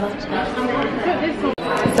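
Indistinct chatter of several people talking in a large room, with a sudden brief dropout in the sound about one and a half seconds in.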